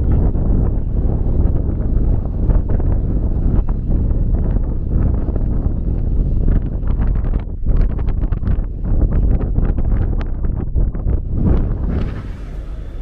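Wind buffeting the camera microphone, a loud, uneven low rumble that rises and falls in gusts.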